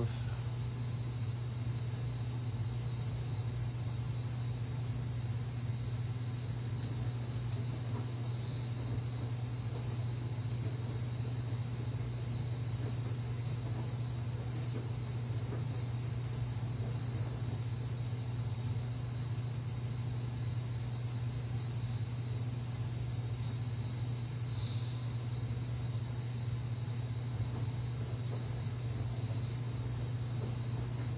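A steady low hum with a faint hiss, unchanging throughout; no distinct sounds stand out.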